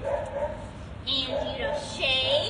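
Dog whining in long, wavering tones, pitched higher in the second half.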